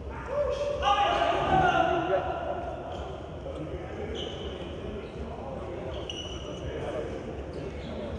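Basketball game sounds in a gym: men's voices calling out loudly for about two seconds near the start, with a ball bouncing and brief high sneaker squeaks on the court floor.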